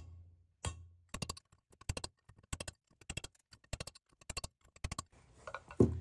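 Metal tapping as a custom installer tool is struck to drive valve stem seals down onto the valve guides of a Honda B18C5 cylinder head: one firmer strike with a short ring near the start, then a run of quick light taps in small clusters. The strikes change timbre once a seal bottoms out, the sign that it is fully seated.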